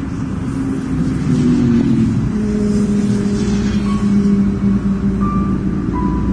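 Motorway traffic: a steady low rumble of passing cars and trucks, growing louder about a second in, with a sustained engine and tyre hum over it.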